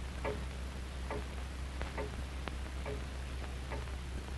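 A clock ticking steadily, a little faster than once a second, each tick with a short ringing note, over a steady low hum.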